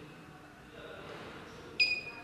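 A fiber fusion splicer gives a single short electronic beep, one steady high tone lasting about half a second, near the end. It is running its automatic splicing cycle with the fibers being aligned.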